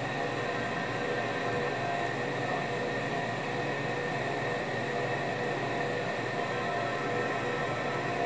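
Steady mechanical hum and hiss with a few faint, unwavering tones and no sudden sounds.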